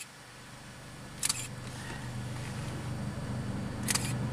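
Camera shutter clicking twice, about a second in and again near the end, over a steady low hum that slowly grows louder.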